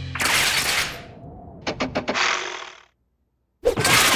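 Cartoon sound effects: a short rush of noise, then a quick run of about four clicks running into a hiss. A brief dead silence follows before a loud sound starts near the end.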